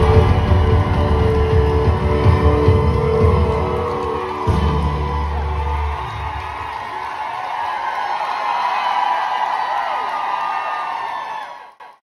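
A live band ends the song on a loud held chord with drums, which stops about six seconds in. The audience then cheers and whoops, and the sound fades out near the end.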